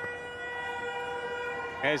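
Horns sounding steadily: several held tones at different pitches at once, over a low background hum of noise.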